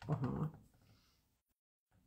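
A woman's short wordless voiced sound, about half a second long at the start. After it comes faint room tone, and the audio cuts out completely for a moment.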